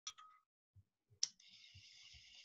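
Two sharp clicks at the very start, then another click a little past a second in, followed by a faint, steady, high hiss.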